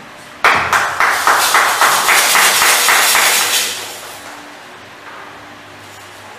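Hands clapping in a quick, even rhythm, about six claps a second. It starts suddenly about half a second in and dies away near the four-second mark.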